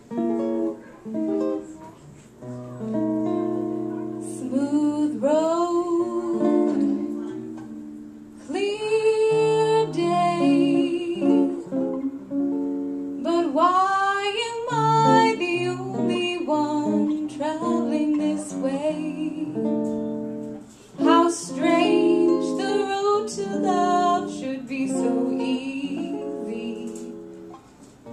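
Female singer and jazz guitar performing a slow jazz ballad. The guitar plays chords alone at first, and the voice comes in about four seconds in, singing in long phrases with short breaks between them.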